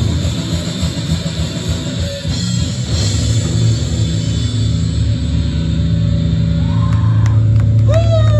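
Live death metal band playing loud, with distorted electric guitars and a drum kit.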